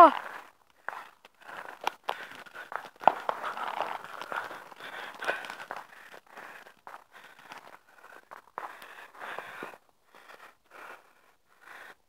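Indistinct voices of people close by, with scattered sharp clicks and crinkling noises right at the microphone.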